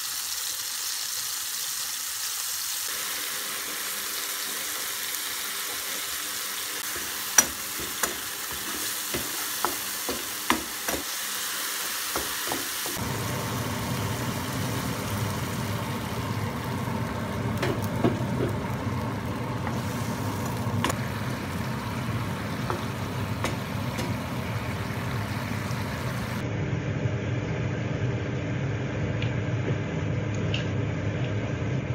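Diced tomato and chilli sizzling in oil in a nonstick frying pan, with a run of sharp taps about a third of the way in. Later, water is poured into the pan and the frying sound turns lower and fuller.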